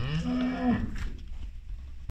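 A Holstein-Friesian cow mooing once: a single call lasting under a second that rises in pitch at the start and then holds steady before stopping.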